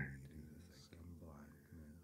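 Faint, softly spoken voice of the hypnotist, close to a whisper: a quieter layered track of his voice under the main narration.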